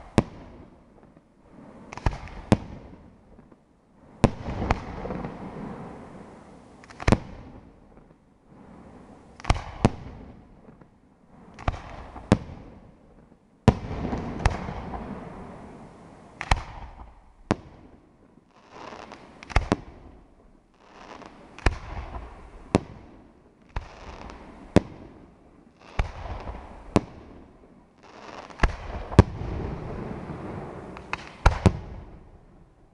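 Aerial firework shells bursting one after another, a sharp bang every one to two seconds. Each bang is followed by a rolling echo that dies away before the next.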